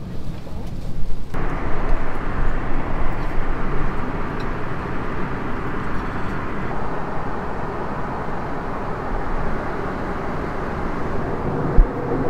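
Steady airliner cabin noise, an even rush of jet engines and airflow, which becomes fuller about a second in. A single short low thump comes near the end.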